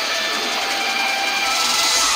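Rock entrance theme with electric guitar playing steadily, sustained notes over a dense wash of sound.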